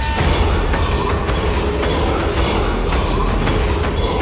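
Dramatic TV-serial background score: a heavy low rumble under a dense wash of noise, with a regular pulse of hits about twice a second.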